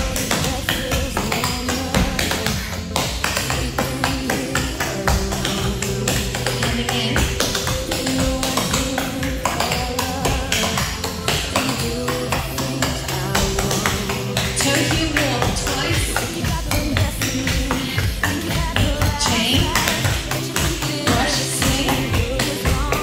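Clogging taps striking a hard floor in quick rhythmic steps, danced over a pop song with a steady beat.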